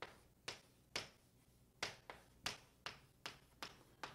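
Faint, short taps of writing, about nine quick clicks spaced roughly half a second apart.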